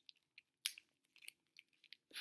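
Teeth biting and tugging at the thin plastic wrapper on a makeup brush, a few faint crinkles and clicks, the loudest about two-thirds of a second in.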